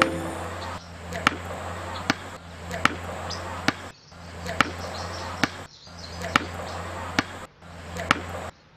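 A volleyball bounced on a paved road, dribbled steadily about nine times at a little under one bounce a second, each bounce a sharp slap. Under it runs a steady low hum and hiss that cuts out briefly three times.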